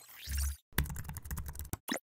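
Keyboard typing sound effect for text being typed into a search bar: a rapid run of key clicks lasting about a second, ending in one louder click. It is preceded by a short sweeping sound with a low thump.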